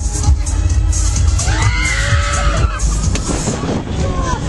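Loud fairground ride music with a heavy bass, and a rider screaming with a rising and falling pitch about halfway through.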